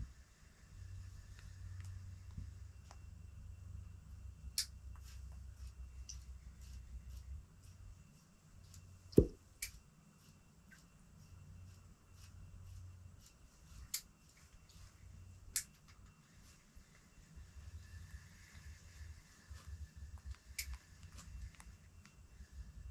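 Faint low rumble with scattered small clicks and ticks, and one sharper knock about nine seconds in.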